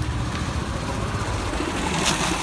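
A motorcycle engine idling steadily, a low even rumble under a constant hiss.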